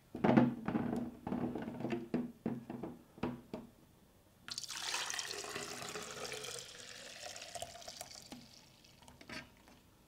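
Fresh juice poured in a steady stream into a tall, narrow plastic container, with a few knocks of the plastic jug and container being handled first. The pour starts about four and a half seconds in, its tone rising slowly as the container fills, and it tapers off near the end.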